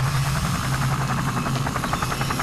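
Sound-design effect: a steady low mechanical drone with a rapid, even flutter like a helicopter rotor's chop, building toward a logo sting.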